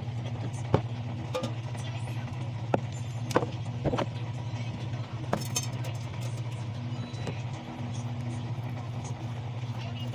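Plastic hamster cage accessories, a plastic exercise wheel among them, being lifted out and handled, giving a scattering of sharp clicks and knocks over the first five or six seconds. Under them runs a steady low hum.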